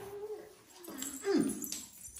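A toddler's wordless whining vocal sounds: a short held note at the start, then a louder whine that falls in pitch about a second and a half in.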